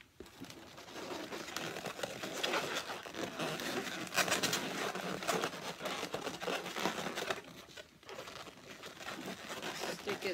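Latex twisting balloons being handled and worked by hand: a continuous irregular rubbing of rubber with many small clicks, easing off briefly about eight seconds in.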